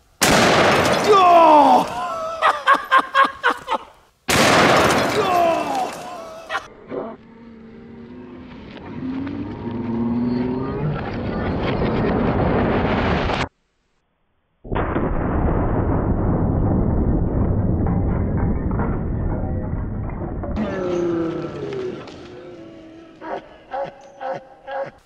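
Two loud shots from a double-barrel .500 Nitro Express elephant rifle, the first just after the start and the second about four seconds later, each followed by a long ringing tail. Long stretches of low, steady rumbling noise come after them.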